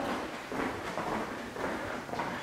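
Soft footsteps on a laminate wood floor, about two a second, with camera handling noise.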